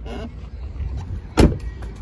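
A Jeep Cherokee's door slammed shut once, a single sharp thud about one and a half seconds in, over a low steady rumble.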